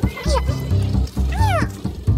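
Background music with a heavy repeating bass beat, over which two cat meows sound, one just after the start and one past the middle, each rising and then falling in pitch.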